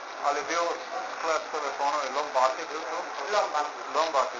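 Speech only: a higher-pitched voice, not the narrator's, talks continuously, with no English words picked up.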